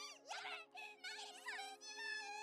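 High, squeaky warbling cries of a cartoon creature, heard faintly from an anime soundtrack, gliding up and down in pitch and held steadier near the end, over a faint steady background tone.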